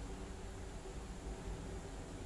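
Steady low background hiss and rumble, room tone with no distinct sounds standing out.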